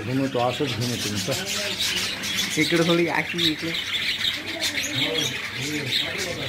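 Birds chirping continuously in the background, with people's voices talking intermittently over them.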